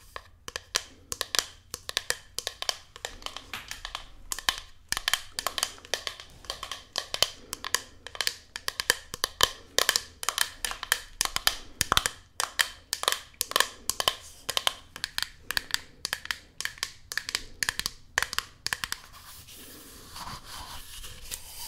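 Long fingernails tapping quickly on a small hand-held container: irregular sharp clicks, several a second, with a brief pause about four seconds in.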